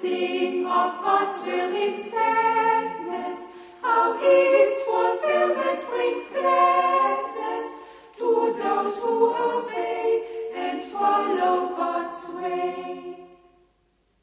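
A choir singing a hymn a cappella in several voice parts, phrase by phrase with short breaks between, ending a little before the close.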